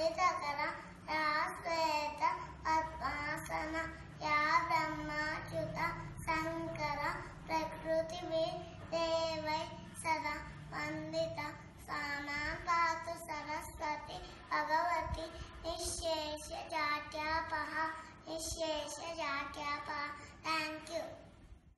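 A young girl chanting a devotional Hindu shloka from memory in a steady, sing-song melody.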